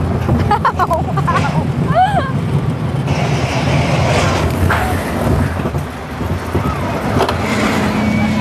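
Steady, loud rumble of a small steel roller coaster heard from a car on board, with riders' short yells in the first two seconds.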